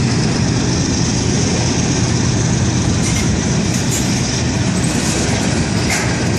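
Freight train cars rolling steadily past over a grade crossing: a continuous rumble of steel wheels on rail, with a few short clicks a little past halfway through.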